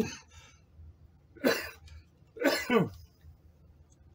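A man coughing twice, about a second apart.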